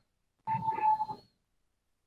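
A short noise from outside, under a second long with a steady tone running through it, that sounds like a car crash.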